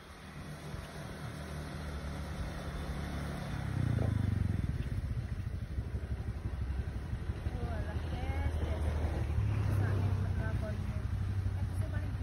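Motor scooter engine running as the scooter rides up the lane, getting louder as it comes closer, with a brief thump about four seconds in.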